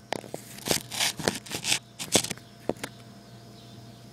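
Irregular rustling, scraping and clicking from a handheld phone being moved and handled, over a faint steady low hum.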